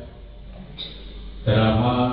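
A man's amplified voice in a large reverberant hall: a pause of about a second and a half, then he resumes speaking slowly, with drawn-out vowels.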